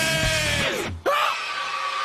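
Loud rock song on electric guitar with a male singer yelling a long note that slides downward, cut off abruptly about a second in. A single held shout follows right after.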